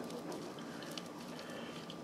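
Faint, steady low hiss with a few soft ticks and rustles of thin plastic wrap being worked off a doll's hair.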